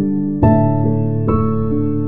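Slow instrumental lullaby on a soft keyboard: held chords ringing on, with new notes struck about half a second in and again past the one-second mark.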